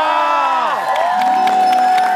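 Studio audience cheering, whooping and clapping over music.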